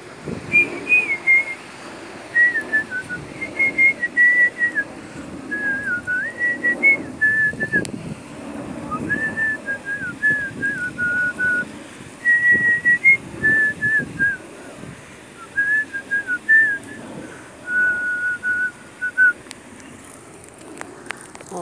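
A person whistling a slow tune in short phrases of held and stepping notes, with rustling and low thumps underneath.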